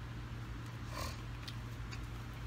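A steady low hum with a few faint light clicks near the end.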